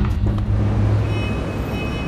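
City traffic ambience: a steady low rumble of road traffic.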